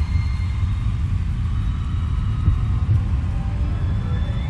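Low, steady rumbling drone with faint high held tones above it, a sound-design bed in a trailer soundtrack.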